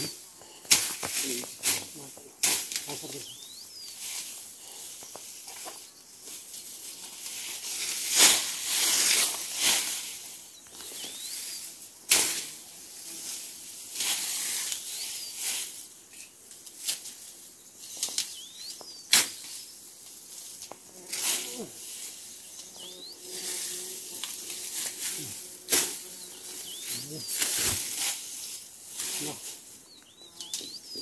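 Bamboo leaves and stalks rustling and crackling as they are pushed aside and handled by hand, in repeated irregular bursts, the loudest and longest about eight seconds in. A few faint high chirps sound now and then.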